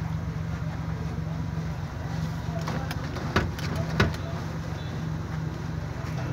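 Suzuki Bolan van's engine idling with a steady low hum. A few sharp clicks and knocks come near the middle, the two loudest about half a second apart.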